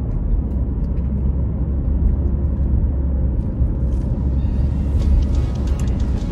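Steady low rumble of road and engine noise inside a moving car's cabin, with background music over it.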